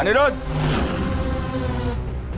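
A man's brief vocal exclamation, rising and then falling in pitch, followed by a steady held tone from the background score.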